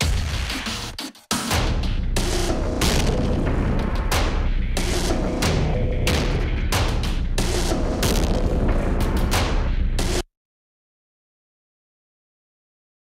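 Heavyocity Damage percussion loop played back: dense, heavily processed cinematic and industrial drum hits with a heavy low end. It drops out briefly about a second in, then runs on and cuts off suddenly about ten seconds in.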